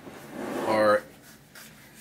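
A man's voice: one short vocal sound about half a second in, then about a second of quiet room tone.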